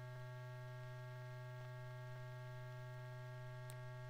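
Steady low electrical hum with several faint steady higher tones above it, and a faint click near the end.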